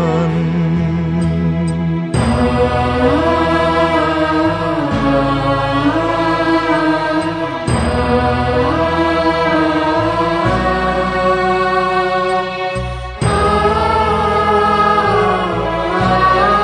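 A Malayalam Christian hymn sung slowly, one voice holding long, gliding notes over steady accompanying chords.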